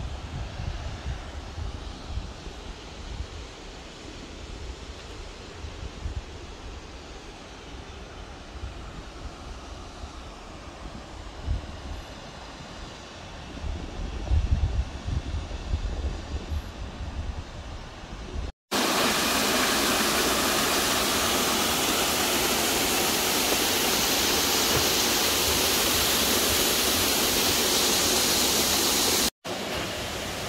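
Wind buffeting the microphone in low gusts over faint open-air hiss for most of the first eighteen seconds. Then, after a sudden cut, the loud, steady, even rush of a waterfall close by for about ten seconds, which stops abruptly near the end.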